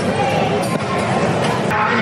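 Crowd hubbub in a large echoing hall: indistinct background voices with scattered knocks and clatter.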